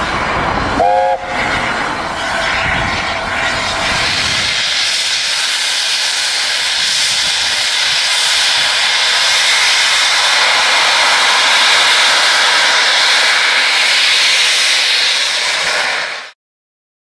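A4 Pacific steam locomotive venting steam in a loud, steady hiss, with a brief chime-whistle toot about a second in. The sound is rumbling at first, then the hiss alone from about four seconds.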